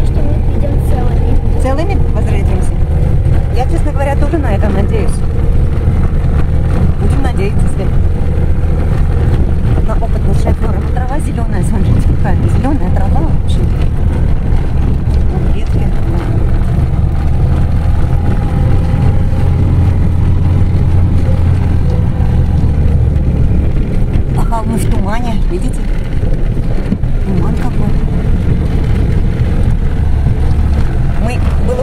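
Lada Niva engine droning steadily, heard from inside the cabin as the car bounces over a rough, muddy dirt road, with clicks and knocks from the body. The drone eases about twenty-three seconds in.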